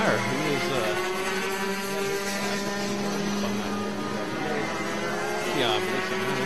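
Rotax two-stroke racing kart engines running at speed around the track, heard as a steady drone whose pitch shifts slightly as the karts pass.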